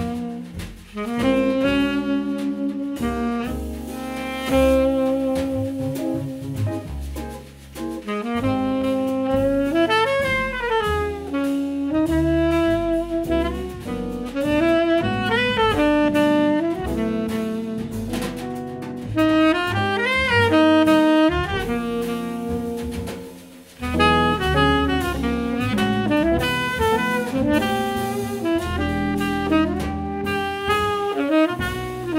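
Small jazz combo playing: a tenor saxophone carries a bending melody over walking upright double bass and drum kit with cymbals, briefly dropping back twice.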